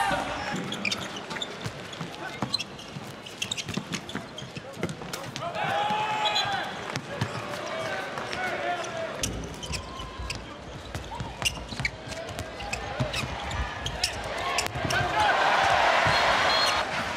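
Sound of a handball game in an arena: a handball bouncing on the court in repeated sharp thuds, with players' shouts and a steady crowd noise.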